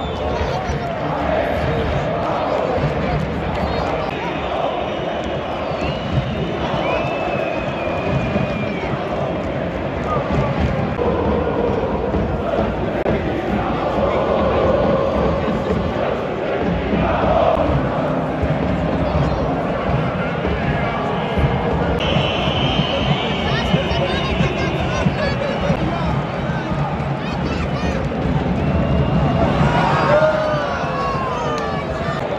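Large stadium crowd of football supporters chanting and shouting in the stands, a dense, steady mass of voices.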